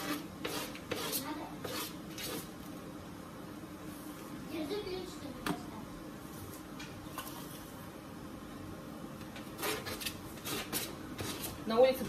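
A table knife scraping margarine off its foil wrapper and knocking against the rim of a steel saucepan: a run of short clicks and scrapes at the start and another about ten seconds in, over a steady low hum.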